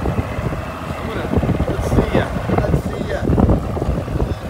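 Wind buffeting the microphone in uneven gusts, a dense low rumble with irregular thumps.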